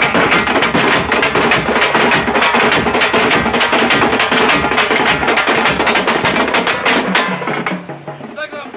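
A troupe of tamate frame drums and large stick-beaten drums playing a fast, dense, driving rhythm, which stops about seven seconds in.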